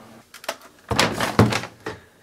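A few light clicks, then a second of louder knocks and thunks with rustling, as of hands handling objects on a tabletop.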